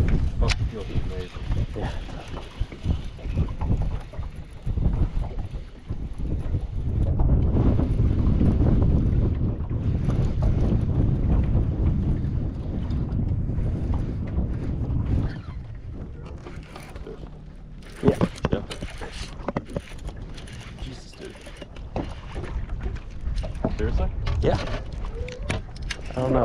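Wind buffeting the microphone: an uneven low rumble, heaviest about a third of the way in, with a single sharp knock about two-thirds of the way through.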